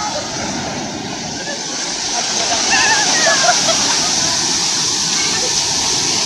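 Sea waves breaking and shallow surf washing up the beach, a steady rush of foaming water, with short voices calling out about halfway through.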